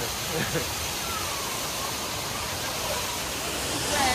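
Steady rush of water pouring and splashing from a water-park play cascade, with faint voices in the background.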